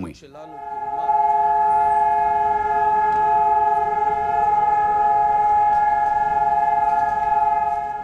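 Israel's nationwide Memorial Day (Yom HaZikaron) mourning siren, the signal for a standing silence in honour of the fallen. It swells up within the first second, then sounds as one long, steady wail of several tones held together.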